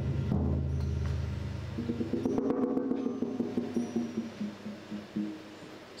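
Instrumental passage of live drumming: toms on a drum kit struck with soft mallets over deep sustained low notes for the first two seconds, then a run of quick pitched drum strokes that thin out and grow quieter toward the end.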